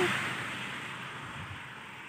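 A passing vehicle's road noise: a steady rush that fades away over about two seconds as it recedes.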